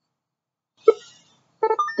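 Silence, then a single short sharp sound about a second in, followed near the end by the race timer's synthesized voice starting a lap call.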